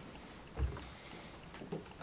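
Quiet lecture-hall room tone with one soft low thump just over half a second in and a few faint clicks later on.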